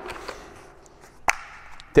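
A single sharp click about a second in, with faint handling noise around it, from a battery chainsaw being handled.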